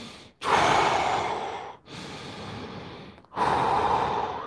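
A man breathing deeply in a counted breathing exercise. A long, loud breath comes first, then a quieter stretch, then another loud breath begins near the end.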